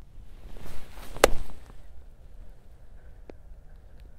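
A 54-degree wedge chip shot: a short swish of the swing, then about a second in one sharp, crisp click as the clubface strikes the golf ball.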